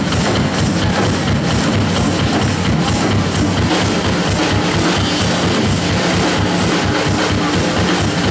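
Live rock band playing loud and steady: a drum kit keeps a driving beat under loud amplified instruments, with no vocals.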